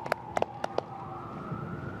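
A siren sounding in the city streets, its pitch gliding slowly upward, with several sharp clicks during the first second.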